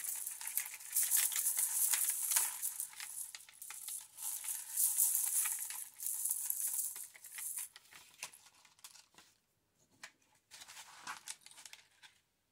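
Strands of a leaf-shaped beaded curtain rattling and clinking as they are handled, with many small clicks packed together for the first seven or eight seconds, then only an occasional click.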